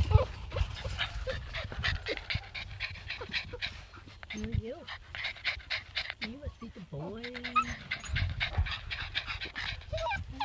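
Labrador retriever puppies panting quickly, with two short gliding voice sounds about halfway through.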